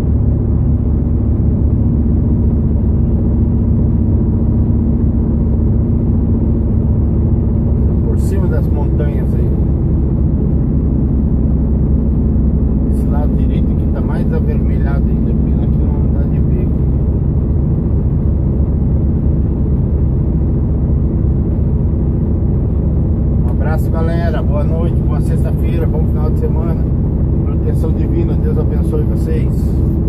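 Heavy truck's diesel engine running steadily, heard from inside the cab, with a low drone throughout. A voice comes and goes over it a few times.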